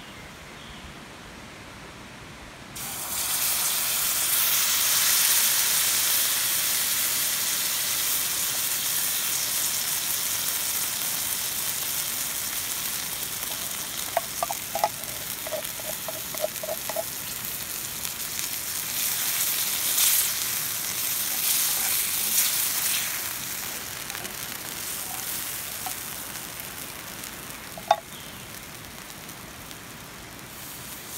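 Baked beans pour from a can into a hot cast iron skillet and start to sizzle suddenly and loudly about three seconds in. The sizzle slowly dies down as the sauce heats. A wooden spoon stirs them, with a few light taps on the pan around the middle and one near the end.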